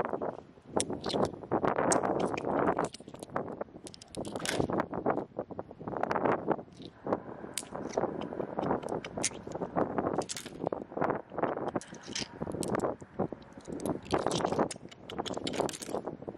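A hand splashes and scrapes through shallow water over wet sand, with irregular small clicks as glass pebbles and stones are picked up and knock together.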